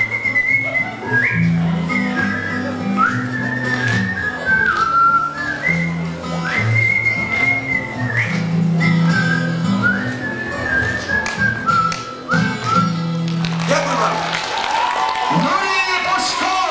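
A man whistling a melody of held and sliding notes into a microphone over acoustic guitar accompaniment. The music stops about fourteen seconds in, and applause follows.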